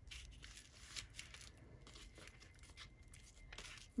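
Faint rustling of paper: book pages and a small torn piece of paper being handled, with a few light soft ticks.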